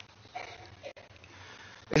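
A man's faint sniff close to a desk microphone, about half a second in, during a pause in his speech.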